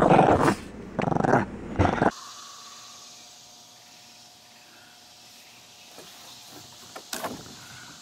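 A small dog growling in bursts while tugging at a toy, loud for about two seconds and then cut off suddenly. Quiet, steady outdoor ambience with a faint hum follows.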